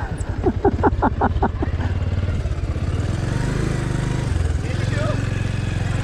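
Motorcycle engine running steadily at low revs, a low hum. A voice is heard briefly in the first second and a half.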